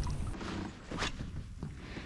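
Faint water sloshing at the surface, with a few light knocks spread through it.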